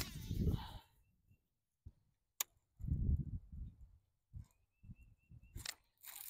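A fishing rod whooshing through the air as it is swung at the start, then soft scattered thumps and clicks of handling the rod and reel, with a faint thin high whine twice.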